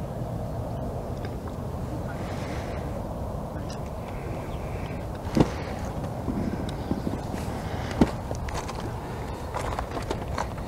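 Steady low background noise with two sharp knocks, about five and eight seconds in.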